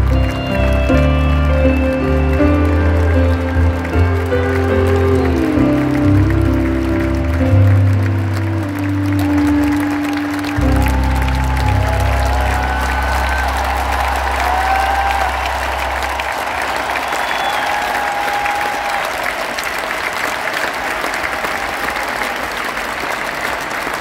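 Live rock band playing the closing bars of a song, ending on a long held chord that dies away about sixteen seconds in. A large stadium crowd applauds and cheers throughout, and the applause carries on alone once the music has ended.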